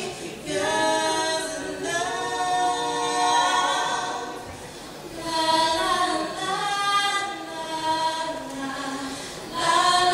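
A cappella singing by a small group of women's voices, with no instruments, in sustained sung phrases. The singing eases off briefly about halfway through before the next phrase.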